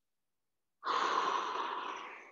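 One long, slow exhale through the mouth, starting about a second in and fading away, as a man comes forward out of a quadruped rock during a slow-breathing cool-down.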